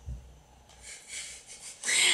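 Breathy laughter: soft airy puffs building to a louder breathy burst near the end, after a soft low thump at the start.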